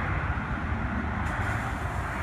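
Steady low outdoor rumble with no clear events in it.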